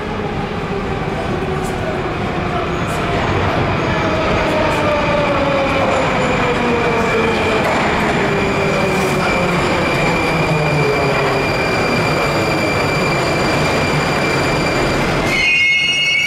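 Moscow Metro 81-740/741 articulated train pulling into the station: a loud rumble under several whines that fall slowly in pitch as it slows, with a steady high wheel squeal. About fifteen seconds in the rumble drops away as the train stops, and a few short rising tones sound.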